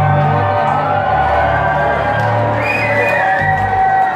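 Live band music at concert volume, with held notes over a steady bass, and a crowd cheering and whooping in a large hall.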